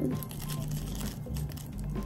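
Faint crinkling rustle of a foam block being pressed and shifted on cardboard, over quiet background music.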